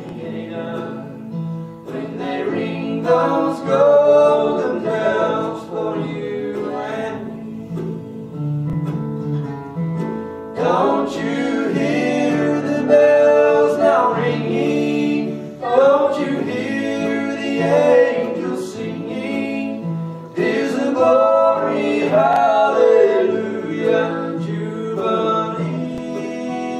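Voices singing a gospel song to guitar accompaniment, in phrases with short pauses between them.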